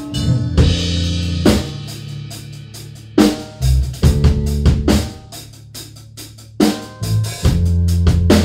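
A rock band rehearsing, recorded through a phone's microphone in the room: drum kit strikes of kick, snare and cymbals over sustained low bass notes. The middle thins out to separate drum hits, and the full band comes back near the end.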